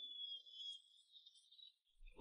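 Near silence: room tone, with a faint high thin tone that fades out within the first second.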